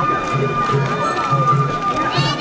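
Japanese festival hayashi music from a dashi float: a taiko drum beating a steady pulse about two and a half times a second under a long, held bamboo flute note, with crowd voices around.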